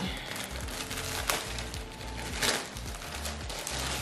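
A clear plastic packaging bag crinkling as it is torn open and a garment pulled out, with a few sharp crackles, the loudest about a second in and halfway through. Background music with a steady low beat plays under it.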